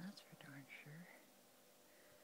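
A person's voice, low and indistinct, in about the first second, then near silence.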